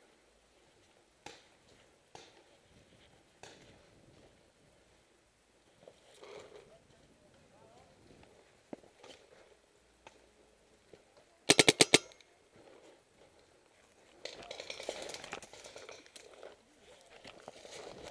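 Planet Eclipse Ego09 electronic paintball marker firing a rapid string of about seven shots in half a second. A few fainter single pops come earlier, and a couple of seconds of noisy movement sound follow.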